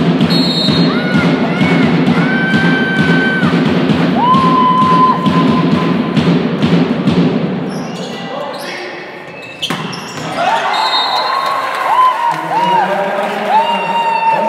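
Volleyball in a large sports hall: rhythmic drumming for the first half, with sneakers squeaking on the wooden court. After a short dip near two-thirds of the way, more shoe squeaks, ball thuds and voices.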